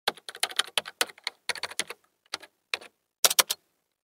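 Computer keyboard typing: quick runs of sharp keystroke clicks broken by short pauses.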